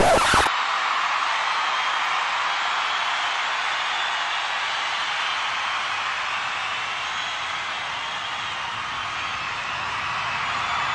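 A steady rushing noise with no distinct tones, easing slightly toward the end.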